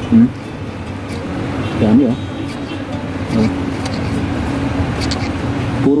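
Steady background drone of a running machine, with a constant hum under it and a few brief murmurs of a man's voice.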